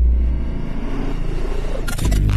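Logo-reveal sound effect: a deep bass rumble under a whoosh of noise that builds and spreads upward, ending in a sharp crash-like burst just before the end.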